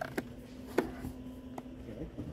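A few light, sharp clicks spaced through a steady low hum.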